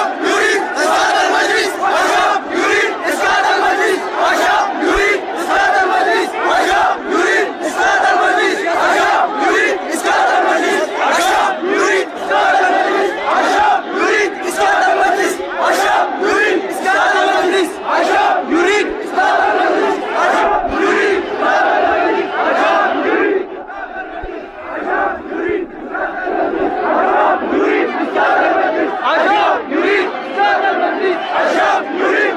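A large crowd of protesters shouting together, loud and continuous. It drops off briefly about three-quarters of the way through, then picks up again.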